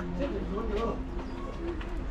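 Voices of people talking in the background, with no clear words.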